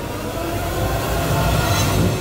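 A rumbling sound effect that swells and then fades away, in the manner of a passing train.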